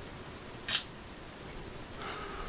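Honor 8 Pro smartphone's camera shutter sound: one short, crisp click a little under a second in, as a photo is taken.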